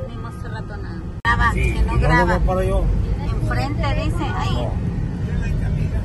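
People's voices talking over a steady low rumble, starting abruptly about a second in.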